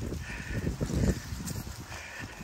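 Footsteps crunching through dry leaf litter, irregular and uneven, with wind rumbling on the microphone.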